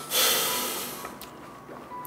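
A man's sigh: a single noisy breath out that starts suddenly and fades away over about a second.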